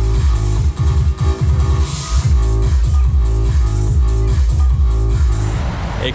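Electronic music with a heavy, steady, repeating bass beat.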